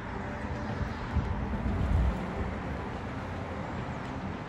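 Outdoor background noise with a low rumble that swells about one to two seconds in, then settles back.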